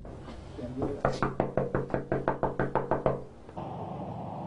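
Rapid knocking on a wooden front door, about six knocks a second for a little over two seconds, each knock ringing slightly.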